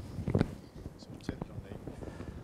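Soft, whispered voices with a few sharp knocks of a hand microphone being handled, the loudest at the very start and about half a second in.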